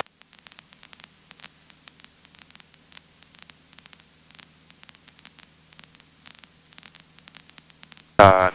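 Faint electronic static: a steady hiss and low hum with irregular small crackling clicks throughout. No engine or voice stands out.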